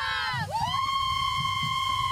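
A group of cheerleaders shouting and cheering together. About half a second in, one long, high whoop begins and holds at a steady pitch.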